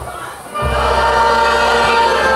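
Polish folk dance music with a group of voices singing. The music drops away for a moment, then a new strain starts about half a second in.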